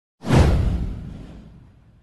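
A whoosh sound effect with a deep low rumble: it starts suddenly about a quarter of a second in, sweeps down in pitch and fades out over about a second and a half.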